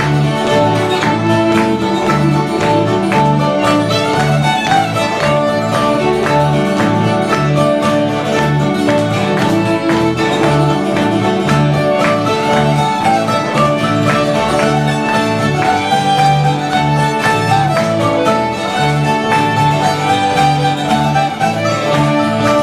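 Old-time string band playing an instrumental tune: a fiddle carries the melody over guitar and other plucked strings, with upright bass notes on a steady beat.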